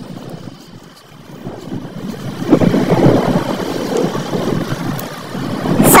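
Wind rushing over the microphone of a moving motorcycle, with road noise, swelling about two and a half seconds in.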